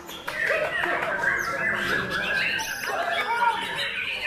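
White-rumped shama (murai batu) singing a fast run of varied whistles and chirps, tangled with the songs of other caged songbirds and a crowd's chatter.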